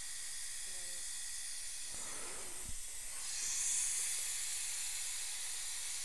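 Dental suction hissing steadily, with a stronger, higher-pitched hiss for about two seconds from about three seconds in.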